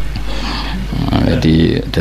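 A man's voice speaking briefly near the end, after a short pause, over a steady low hum.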